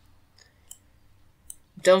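Two faint computer mouse clicks about a second apart over near silence.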